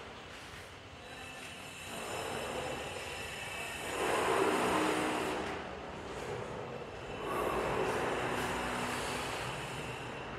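Low background rumble with no clear tones, swelling about four seconds in and again from about seven and a half seconds.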